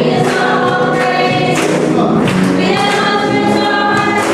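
A congregation singing a Christian worship song together, with long held notes.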